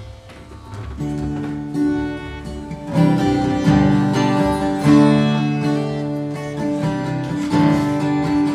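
Acoustic guitar playing the instrumental introduction to a gospel song, coming in about a second in and growing louder about three seconds in.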